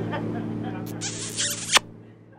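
A boat's engine droning steadily as the sound fades out, with a high hissing zip about a second in that ends in a sharp click.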